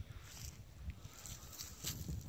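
Faint wind rumbling on the microphone, with a couple of soft rustling footsteps on a dry grassy shoreline path.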